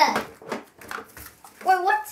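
A child's voice trailing off, then faint short knocks and clicks of small plastic toy pieces being handled on a table, then a brief child's vocal sound near the end.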